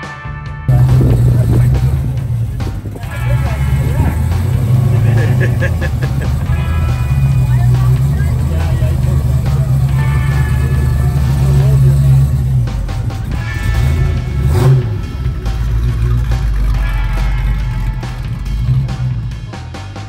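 A 426 V8 engine running loudly with a deep, steady exhaust note, starting abruptly under a second in.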